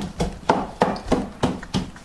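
A wooden pestle pounding in a wooden mortar (pilão), crushing garlic into a paste. It makes a steady run of sharp wooden knocks, about three a second.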